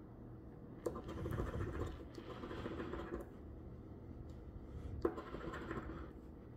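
Metal coin scratching the coating off a scratch-off lottery ticket, faint: a click about a second in, then about two seconds of scratching, and another click with a short scratch near the end.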